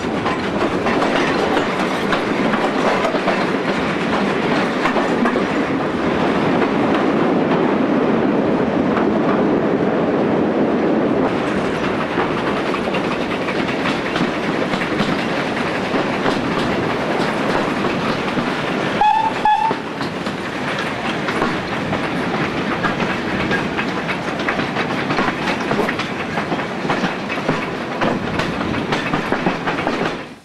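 Passenger train behind 0-8-0 steam tank locomotive 5485 running, heard from a carriage window: a steady rumble with constant wheel clicks over the rail joints. About two-thirds of the way through, the locomotive's whistle gives two short toots.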